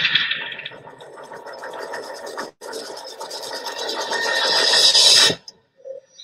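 Documentary sound design under title cards: a dense, fast-ticking noisy texture that eases off, drops out for an instant about two and a half seconds in, then swells louder and cuts off suddenly a little past five seconds.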